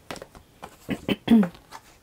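Tarot cards being handled, with a few light clicks and rustles as a card is slid off the deck. A brief murmur from a woman's voice a little past a second in is the loudest sound.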